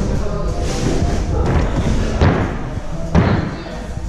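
Two heavy thuds about a second apart, over background hip-hop music.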